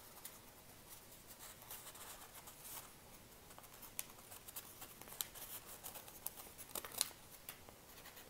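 Folded printer paper rustling and crinkling faintly under the fingers as one end of the strip is slotted into the other, with a few sharper small ticks about halfway and near the end.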